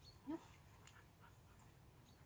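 A dog gives one brief whine, rising in pitch, about a third of a second in; otherwise near silence.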